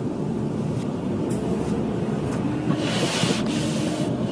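Steady road and engine noise heard from inside a moving car on a snowy road, with a brief hiss about three seconds in.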